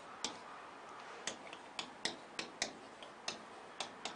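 Faint, irregular taps and clicks of a pen tip striking a writing board as words are handwritten, a few per second.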